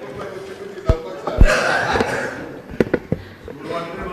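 A handful of sharp knocks close to the Speaker's desk microphone, the loudest about one and a half seconds in and a quick cluster of three near the end, over low talk and chuckling.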